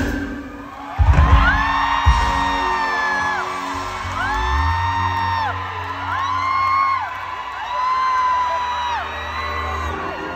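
Live pop band through a concert sound system: a drum hit about a second in, then a run of long held notes that slide up into each note and fall away at its end, over a steady bass line.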